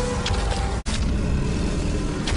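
Dense film soundtrack mix with a heavy low rumble, broken by an abrupt split-second dropout a little before the midpoint.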